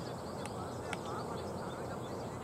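Birds chirping and calling over a steady background noise, with two sharp clicks about half a second and a second in.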